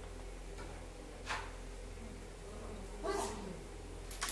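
Carrom shot: a sharp click of the striker striking the coins about a second in, then a louder clack about three seconds in with a short falling, voice-like sound under it.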